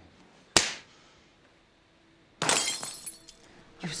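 Glass breaking in a film soundtrack: a single sharp knock about half a second in, then near the middle a loud shattering crash with a ringing tail that dies away over about a second.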